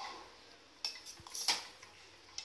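Metal ladle clinking against the side of a metal cooking pot while stirring thick cooked moong dal: a few light clinks about a second in, the loudest at about one and a half seconds.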